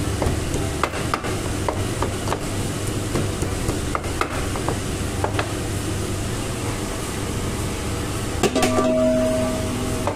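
Wooden pestle pounding garlic in a wooden mortar: irregular dull knocks through the first half, over a steady low background rumble. Near the end, a clatter and a steady ring lasting about a second and a half as the crushed garlic is emptied into a metal pot.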